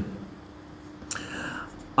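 A pause in a man's sermon: a faint steady hum of room tone, then about a second in a short, breathy, whisper-like sound from the speaker.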